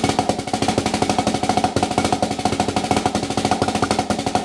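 Drumsticks playing single ratamacues on a rubber practice pad, with backsticking strokes where the twirled stick's butt end strikes the pad: a fast, steady stream of dry taps.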